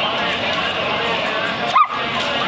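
A dog gives one short, sharp yelp near the end, over a steady background of crowd chatter.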